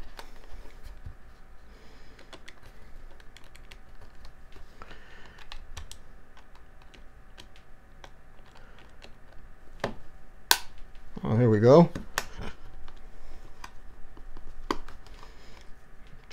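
Plastic enclosure of a Seagate 5 TB portable drive clicking and creaking as a pry tool is worked along its seam against the snap clips, with many small scattered clicks and a few sharper snaps about ten, twelve and fifteen seconds in.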